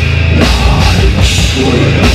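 Metalcore band playing live and loud: heavy distorted guitars and bass over a drum kit with crashing cymbals.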